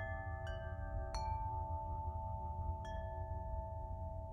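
Film score: bell-like chime tones struck three times, each left ringing and overlapping the last, over a low steady drone.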